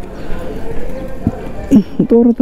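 Iron gate being swung open by hand: a rattle of the metal bars with a single knock about a second in.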